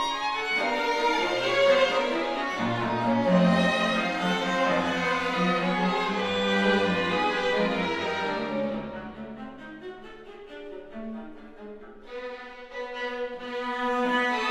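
String quartet of two violins, viola and cello playing a busy passage with many overlapping lines. About eight seconds in it dies away to a soft pianissimo, then begins to swell again near the end.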